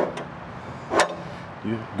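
Two metal clicks from the adjustable foot leg of a travel trailer's fold-out entry steps as its release lever is pushed in and the leg is retracted. The first click is soft, and the second, about a second later, is louder and sharper.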